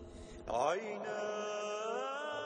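A man's voice chanting: about half a second in it glides up into one long held note and sustains it, after a faint fading tail of the preceding intro sound.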